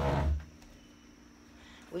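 A woman's voice trailing off on a drawn-out word with a low rumble beneath it, then a pause of faint room tone before she starts speaking again at the very end.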